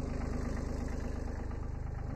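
A 1981 Kubota B7100's three-cylinder diesel engine idling steadily, with an even pulsing beat.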